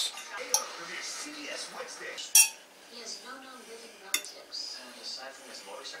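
Metal utensil clinking and scraping against a saucepan and a plate, with a few sharp clinks; the loudest comes about two and a half seconds in.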